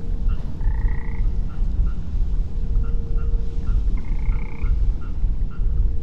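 Frogs croaking: short calls repeating about three times a second, with two longer calls about a second in and about four seconds in, over a steady low rumble.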